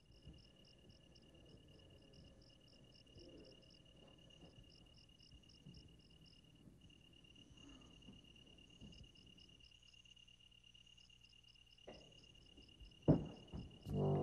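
Crickets chirping at night: a steady high trill with rapid pulsed chirps above it, faint. Near the end two thuds, the louder about a second before the end.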